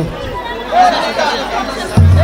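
Background chatter of several people talking at once in a gathered crowd.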